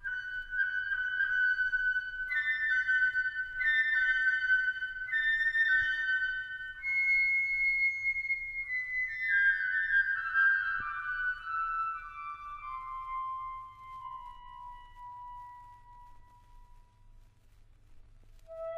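Chamber orchestra playing a slow, quiet passage of high held notes; from about halfway through, the line steps steadily downward and fades toward the end.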